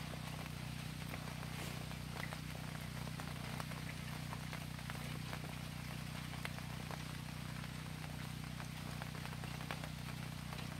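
Steady rain with scattered small drips and ticks of water landing, over a steady low hum.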